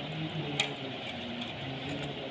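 A small screwdriver clicks once against a wall switch's terminal screw about half a second in, over a steady hiss and faint pitched background tones.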